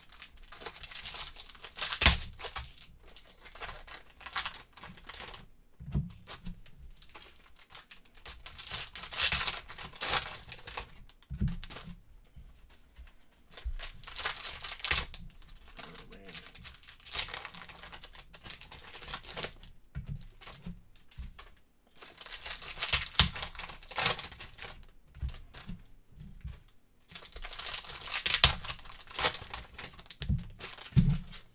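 Foil wrappers of Panini Optic basketball hobby packs being torn open and crinkled, in repeated bursts every few seconds, with a few sharp knocks as cards are handled on the table.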